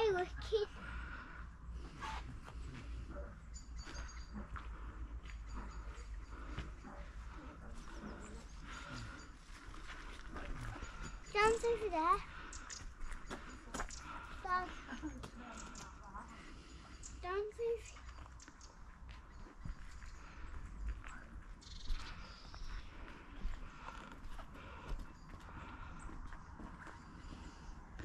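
Quiet outdoor ambience with a steady low rumble of wind on the microphone, broken a few times by short high-pitched calls from a child's voice, the loudest about a third of the way in.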